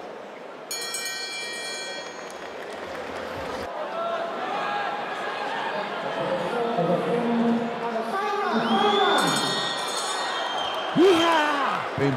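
Boxing ring bell rings once, a clear metallic ring lasting about a second, marking the end of the round, with a second similar ring near the end. In between, the hall's crowd chatters.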